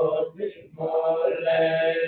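Buddhist monk chanting in a male voice through a microphone, on steady held notes, with a brief pause for breath about half a second in.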